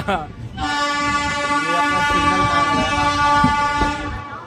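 Train horn sounding on the approach into a station: a brief break just after the start, then one long steady blast held almost to the end.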